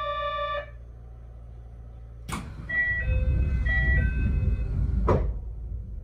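Inside a stopped narrow-gauge commuter train car: a steady electronic buzzer tone cuts off under a second in. About two seconds later a clunk comes as the doors begin to work, with a two-note chime sounding twice over a low rumble, then a door shutting with a thump about five seconds in.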